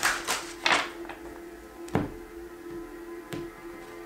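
A deck of tarot cards being shuffled by hand: a few quick card clicks in the first second, then scattered taps and a soft thunk about two seconds in. Steady background music plays underneath.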